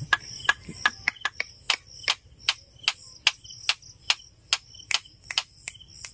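Calling insects: a steady high-pitched drone with sharp, regular ticking of about three ticks a second.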